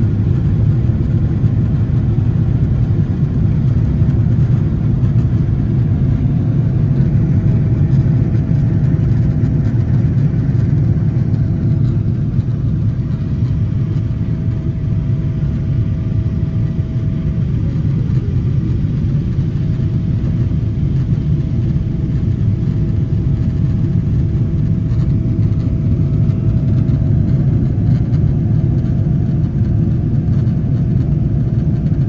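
Jet airliner cabin noise in flight, heard at a window seat: a loud, steady, deep rumble. A faint steady whine rides above it, briefly drops in pitch and fades about halfway through, then returns.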